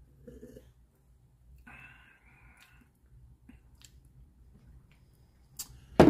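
Faint drinking sounds: a sip and swallow from a glass about half a second in, then a breath out and a few small mouth clicks and lip smacks while tasting.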